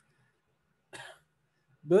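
A single short cough about a second into otherwise near silence.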